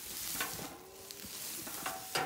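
Long grass rustling and swishing underfoot as someone walks through it, with a few faint light clicks.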